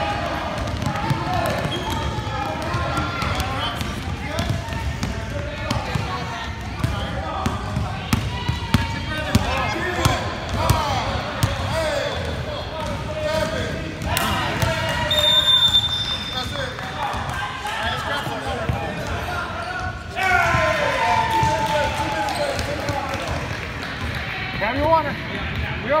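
Basketballs bouncing on a gym's hardwood floor amid the chatter of players and spectators, with a referee's whistle blown once, for about a second, a little past halfway.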